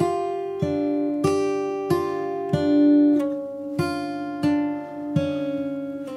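Martin J-40 acoustic guitar in open G tuning, fingerpicked with bare fingers: a slow blues arpeggio played one note at a time, a little under two notes a second, each note left ringing into the next.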